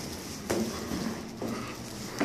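Footsteps climbing the stairs of a stairwell: two steps about a second apart, the first about half a second in.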